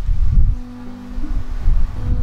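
Wind buffeting the microphone: a low rumble that comes in gusts. Soft held music notes come in under it about a quarter of the way in.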